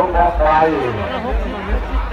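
Speech: a voice talking in Thai.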